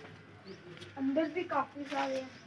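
A child's high voice making a short drawn-out vocal sound, starting about a second in.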